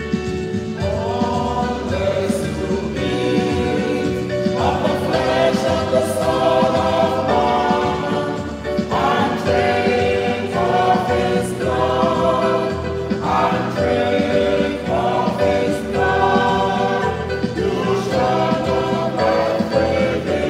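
A choir sings a hymn in phrases a second or two long over a steady instrumental accompaniment.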